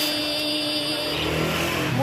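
Background vocal song with a singer holding one long steady note. A low hum comes in about a second in.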